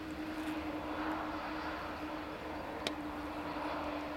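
Jet engines of a CC-150 Polaris, a military Airbus A310, running as it rolls along the runway after landing: a steady distant rush with a low steady hum. A single sharp click about three seconds in.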